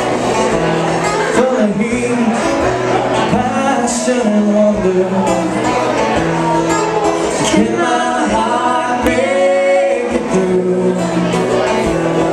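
Live acoustic band: two acoustic guitars strumming chords under a sung lead vocal, in a steady country-style song.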